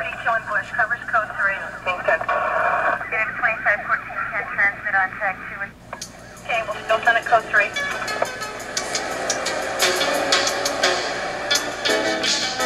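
Thin, radio-like voices talking for about the first six seconds. Then music with a steady beat and guitar starts and runs on.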